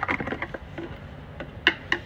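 Liquid fuel additive glugging out of a tipped plastic bottle into a car's fuel filler neck, with a few light, irregular clicks.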